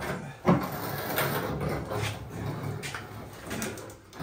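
Old electric water heater tank knocking and scraping against the wall and fittings as it is worked off its hooks and lowered by hand. There is a sharp knock about half a second in, then irregular rubbing and scraping.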